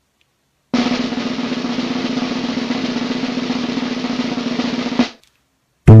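Drum roll sound effect: a fast, even roll of about four seconds. It starts sharply a little under a second in and cuts off suddenly, as a suspense build-up before a reveal.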